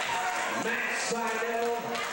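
A man's voice shouting over the hall's background voices, holding one long drawn-out call from about half a second in to near the end.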